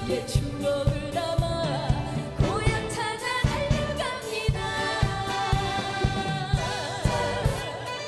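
A woman singing a trot song live into a microphone, backed by a band with a steady drum beat; she holds a note with wide vibrato near the end.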